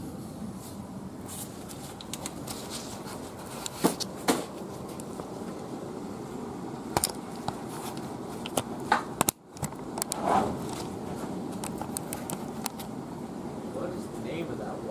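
Steady background hum with scattered light clicks and knocks from hands and gloves working around open golf-cart battery cells.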